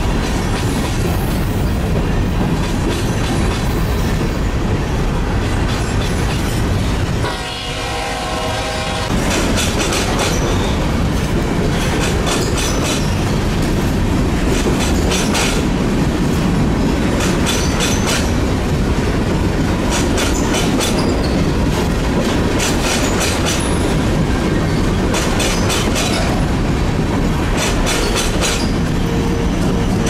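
Freight train of covered grain hopper cars rolling past at speed, with a steady rumble of wheels on rail. Rhythmic clickety-clack of wheel sets over rail joints comes in clusters every second or so. The rumble dips briefly about a quarter of the way through.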